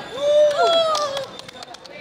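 A group of people giving a drawn-out shouted cheer that lasts about a second and then dies away into quieter voices.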